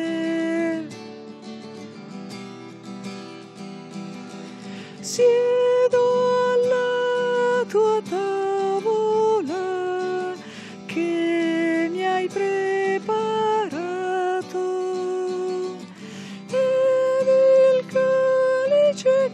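A hymn sung to strummed acoustic guitar. About a second in the voice drops out, leaving the quieter guitar, and the singing comes back in strongly about five seconds in.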